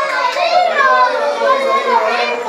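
A crowd of children chattering and calling out over one another, many high voices at once.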